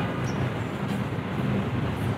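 Steady low rumble of city traffic mixed with general street ambience, without distinct events.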